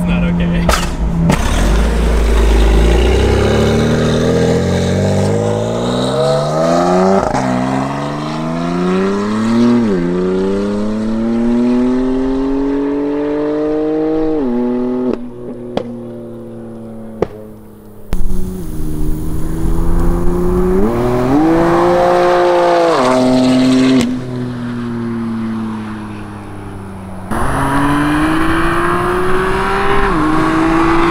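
BMW M2 Competition's S55 twin-turbo straight-six, with catless downpipes and the stock muffler, accelerating hard in several pulls, its pitch climbing and dropping back at each upshift. In the off-throttle stretch in the middle the exhaust gives sharp pops and crackles.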